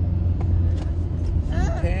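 Steady low rumble of road and engine noise inside the cabin of a moving car. A voice starts near the end.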